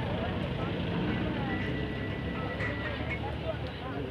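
A man's voice speaking in Tamil over a steady low background rumble.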